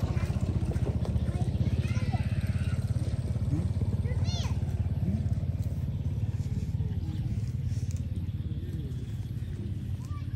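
A small motorcycle engine running steadily, slowly fading toward the end, with a few short high squeaks over it about four seconds in.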